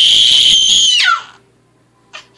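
A toddler's loud, high-pitched gleeful squeal, held steady for about a second, then dropping in pitch and breaking off.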